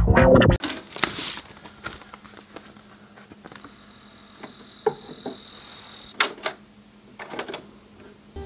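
Music cuts off about half a second in. Then come quiet handling sounds as a vinyl LP is taken from its paper sleeve and set on a turntable: scattered light clicks, taps and paper rustles over a faint steady hum.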